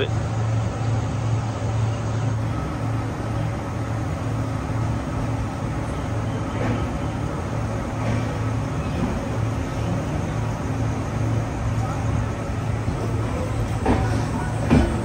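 Passenger train coach of the Darjeeling Mail heard from an open door as the train pulls slowly out of a station: steady running noise over a constant low drone, with a few faint ticks.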